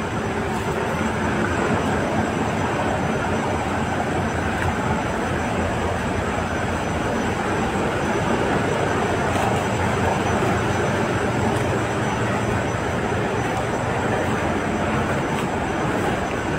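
Steady drone of large diesel engines, a low hum under a wash of noise, from the launches towing the burnt vessel.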